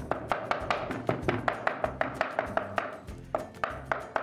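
Rapid chopping with a steel mincing knife on a wooden cutting board, about five strokes a second, mincing pork finely for sausage, with a short lull near the end.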